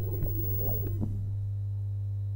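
The last traces of the music die away in the first second, leaving a steady low electrical hum on the soundtrack.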